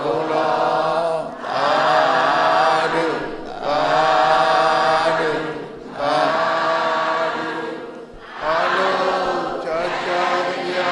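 Buddhist devotional chanting in Pali, sung in slow, drawn-out phrases of about two seconds with short breaks for breath between them, in the manner of a congregation reciting together.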